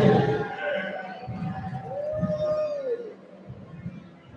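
A man singing long, held notes a cappella into a microphone through the hall's sound system; a little after halfway one note swells up and falls away.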